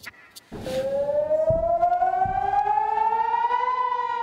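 Civil defense air-raid siren wailing, starting about half a second in and rising steadily in pitch, with two low thumps underneath. It is the warning of incoming rocket fire on southern Israel.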